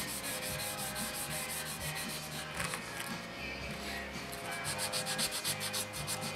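Wet 320-grit sandpaper rubbed back and forth by hand over putty-filled seams on a plastic model hull, in quick, even strokes, several a second.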